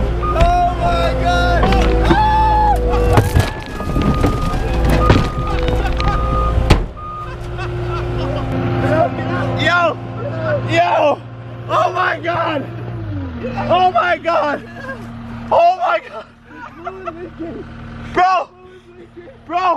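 A Caterpillar machine's diesel engine working hard as it tips a limousine over onto its roof, with crunching impacts around three to five seconds in as the car goes over. The loud engine sound cuts off suddenly about seven seconds in, leaving a quieter steady hum under excited shouting.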